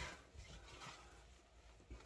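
Near silence, with a faint rustle of a hockey jersey's fabric as it is turned over in the hands.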